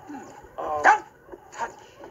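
Short yelping vocal cries from a cartoon character. The loudest one falls in pitch a little under a second in, and a shorter one comes near the end.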